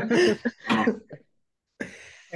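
A person coughing in a few short bursts during the first second, then a brief pause.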